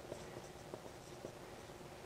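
Dry-erase marker writing on a whiteboard: faint squeaky strokes and light taps, under a faint steady room hum.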